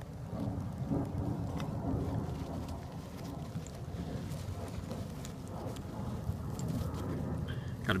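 Rain falling on the leaves and ground, with scattered small ticks of drops over a steady low rumble.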